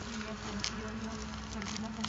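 A low steady buzz that wavers slightly in pitch, with a few faint clicks over a background hiss.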